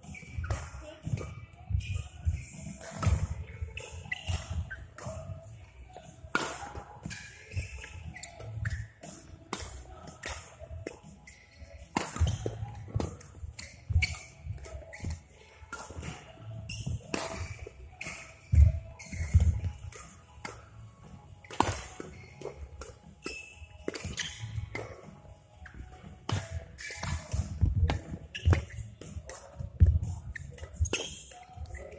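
Badminton rally play in a sports hall: rackets striking the shuttlecock in quick, irregular succession, with thuds of players' feet landing and lunging on the court floor.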